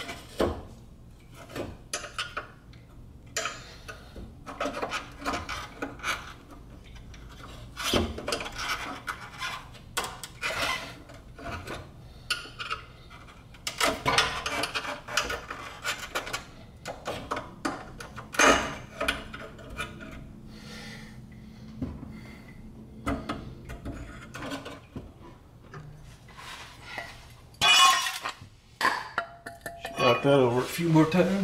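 Exhaust pipe of a 1998 BMW Z3 being worked loose by hand from its rubber hangers: irregular metal clinks, knocks and scraping as the section is pulled and shifted, with a louder burst of clatter near the end.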